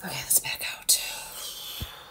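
Hair rustling as fingers lift and fluff it, with two sharper rustles about a third of a second and just under a second in.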